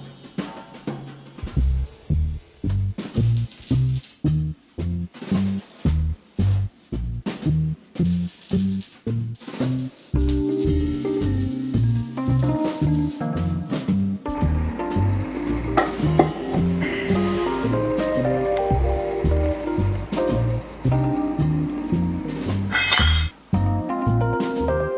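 Background music: a bass line stepping in a steady beat with drums, joined about halfway through by a higher melody.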